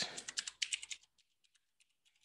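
Computer keyboard being typed on: a quick run of about ten key clicks in the first second, then a pause with a couple of faint taps near the end.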